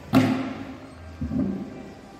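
A loud, sharp bang of a hard plastic mannequin being knocked down on a marble floor, ringing on in a large echoing hall, followed about a second later by a second, softer knock.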